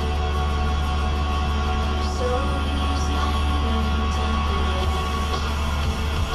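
Music playing on the car radio inside the cabin, with a steady low rumble underneath.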